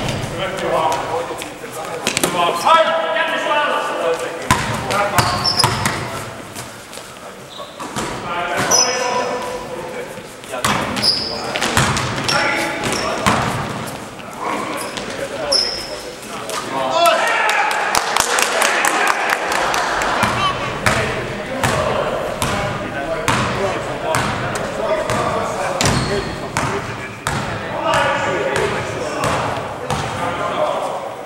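Indoor basketball game echoing in a large sports hall: the ball bounces repeatedly on the court floor, sneakers give short high squeaks now and then, and players call out to each other.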